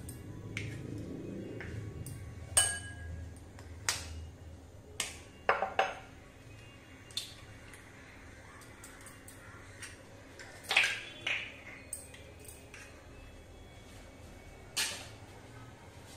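Eggs tapped against the rim of a glass bowl and broken open: about a dozen scattered sharp taps and clicks, a few of them leaving a brief glassy ring.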